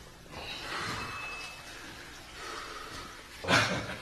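A man breathing hard in soft, noisy breaths, winded from dance practice, then a short loud burst of voice near the end.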